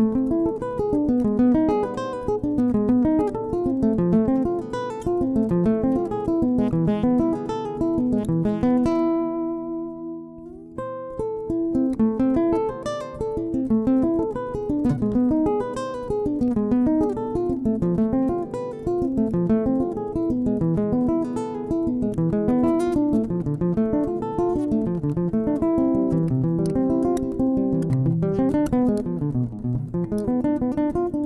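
Ibanez AEG8TNE-NT semi-acoustic guitar fingerpicked in a continuous run of single notes and chords. About nine seconds in, one chord is left to ring and fade for a couple of seconds before the picking resumes.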